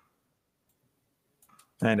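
Near silence with a couple of faint clicks, then a man starts speaking near the end.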